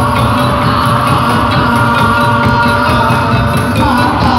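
Live ensemble music: large barrel drums and a long keyed percussion instrument playing with keyboard and drum kit, held tones over a steady drum beat.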